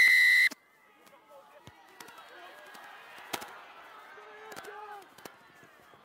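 Referee's whistle, one short, loud blast of about half a second that restarts play after "time on". Then the noise of a crowd and players shouting across the pitch, with a single knock about three seconds in.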